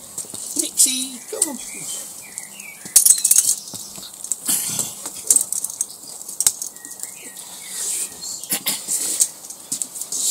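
A black Labrador moving about on concrete paving with a rubber toy football in its mouth: a run of sharp clicks and scuffs, with a few short high chirps.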